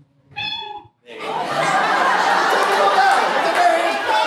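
Audience laughing loudly, starting about a second in after a brief spoken line and carrying on.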